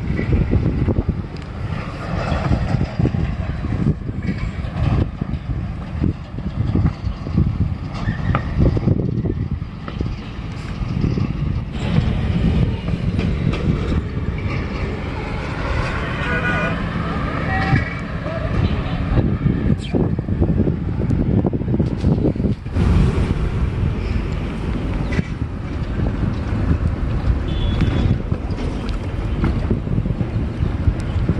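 Wind buffeting an outdoor microphone: a continuous, uneven low rumble that rises and falls, with faint voices around the middle.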